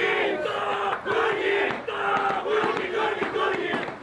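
Group of teenage footballers in a huddle chanting a short shouted phrase over and over in unison: a team cheer.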